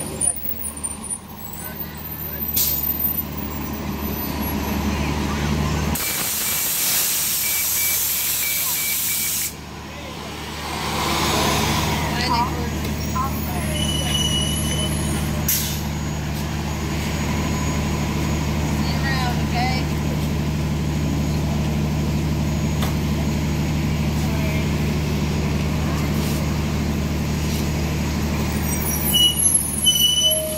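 Gillig Advantage Low Floor transit bus idling at a stop with a steady low engine hum. About six seconds in, a loud hiss of released compressed air lasts about three and a half seconds, with a faint beeping tone over it.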